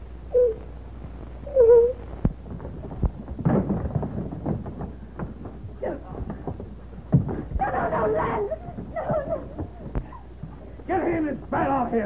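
A few short whimpering cries, then a struggle of several people: scuffling and knocks, with loud strained shouts and grunts near the middle and the end. A steady low hum of an old film soundtrack lies underneath.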